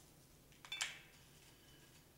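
Breadcrumbs being sprinkled by hand from a ceramic bowl onto ravioli in a skillet: mostly quiet, with one brief soft rustle about three-quarters of a second in.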